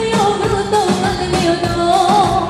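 Live band playing fast Romanian party dance music: an ornamented, wavering lead melody over a steady quick beat.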